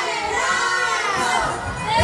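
A group of young women's voices singing loudly together, with no clear instrument behind them.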